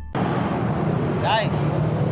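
Street traffic noise of passing motorbikes and cars, cutting in suddenly just after the start, with a voice heard briefly about a second and a half in.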